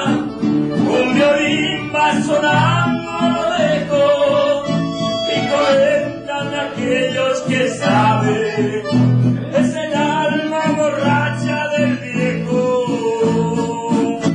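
A man singing a song accompanied by two acoustic guitars.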